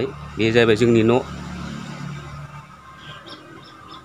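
A person's voice, drawn out for nearly a second just after the start, over a steady low hum that fades away about halfway through.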